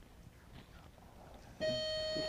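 Game-show timer tone: a steady, buzzy electronic tone starts suddenly about a second and a half in and holds one pitch, signalling that the 60-second round's time has run out. Before it there is only faint room noise.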